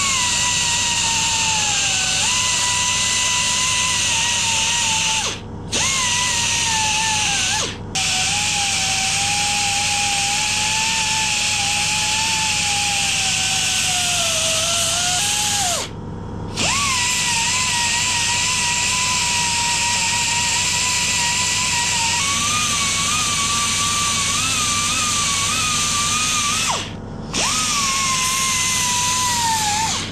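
Handheld narrow-belt sander grinding down an aluminium engine casing: a steady motor whine over the hiss of the belt on metal, its pitch sagging and wavering as the belt is pressed in. It cuts out briefly four times and picks back up each time it restarts.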